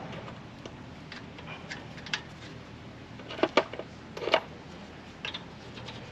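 A few scattered sharp metallic clicks and taps of bolts being fitted by hand through a wheel spacer to hold a brake disc on the hub, the loudest a little past halfway.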